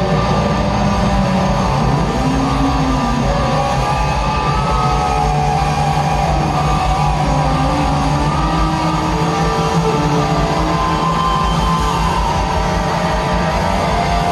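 Rock band playing live in an instrumental passage: electric guitars, bass and drums, loud and steady throughout.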